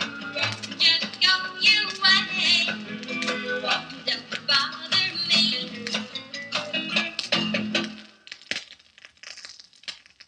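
A 1957 country/rockabilly 45 rpm record playing on a turntable, with singing and guitar. The song ends about eight seconds in, and after that only the stylus's crackle and clicks in the blank groove between tracks can be heard.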